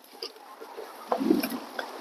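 Faint rustling and a few light clicks of a person moving about as he climbs out of a car seat, with a brief low sound about a second in.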